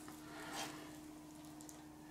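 Quiet room tone with a faint steady hum, and a soft brief rustle about half a second in.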